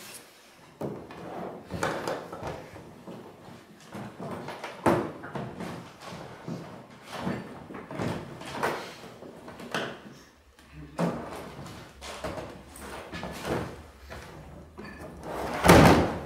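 Rummaging inside a hard plastic Hardcase drum case, with irregular knocks and scrapes against the case and its lifted lid. Near the end the lid comes down onto the case with a loud thump.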